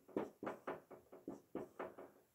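Dry-erase marker drawn across a whiteboard in a quick series of short, faint strokes, about four a second, as music notes are written.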